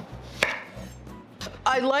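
Chef's knife slicing through an onion on a wooden cutting board, with one sharp knock of the blade hitting the board about half a second in.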